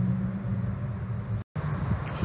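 Steady low engine hum of a motor vehicle, broken by a brief total dropout about one and a half seconds in.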